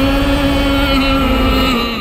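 Dramatic TV-serial background score: a deep rumble under one held note, which dips slightly and fades near the end.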